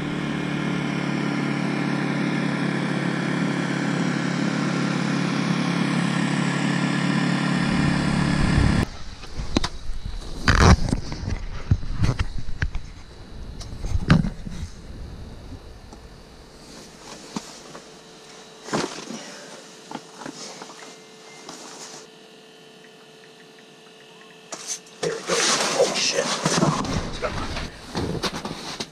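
A motor vehicle's engine running steadily for about nine seconds, then an abrupt cut to scattered knocks and bumps of gear being handled, with a faint steady hum partway through.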